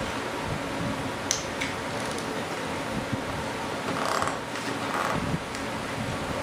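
Steady background hum of a workshop with light clicks and scrapes of small metal hand tools being handled on a workbench, a couple of short scrapes near the end.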